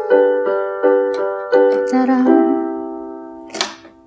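Electronic keyboard on a piano sound, playing chords struck about three times a second as a chord-progression example. About two seconds in it moves to a lower chord, which then rings and fades out.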